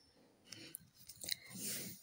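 Faint handling sounds: small plastic knocks and a light click as a plastic measuring scoop is set down on a table, followed by a brief soft rustle.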